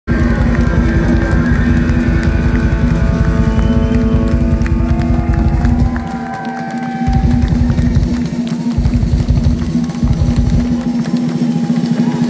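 Live rock band playing through a concert PA, heard from the crowd: long held chords over a steady low droning note. The deep bass drops out briefly a few times in the second half.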